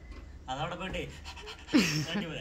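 Speech: a man talking in short phrases, with a loud, breathy exclamation falling in pitch near the end.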